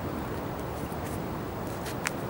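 Faint handling of a PVA bag being worked onto a plastic bag-loading tube, over a steady background hiss, with one sharp click near the end.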